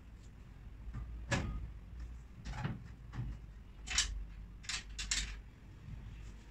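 Knocks and bumps of a cabinet being assembled as its frame and panels are handled and fitted: about seven sharp knocks, irregularly spaced, the loudest about a second in and about four seconds in.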